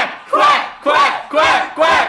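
A group of young men chanting "quack" in unison, about two loud shouted quacks a second in a steady rhythm, as a hype chant.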